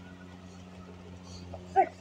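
A man's short vocal exclamation near the end, as he comes in from a sprint, over a steady low hum.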